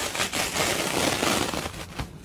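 Nonwoven outer cover being peeled away from a disposable diaper's polyethylene backsheet film: a loud crackling, tearing rustle that eases off near the end.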